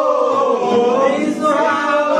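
A group of men singing together, holding long notes that bend in pitch.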